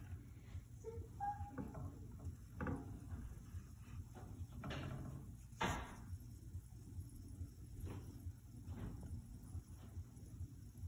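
Silicone spatula stirring and scraping around a nonstick skillet of simmering butter and milk: a handful of soft, separate strokes against the pan, the loudest a little over halfway through, over a faint low hum.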